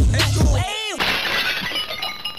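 Outro music with a hip-hop beat and heavy bass cuts off just over half a second in, followed by a short swooping sound effect and then, about a second in, a glass-shattering sound effect that fades out with a light ringing.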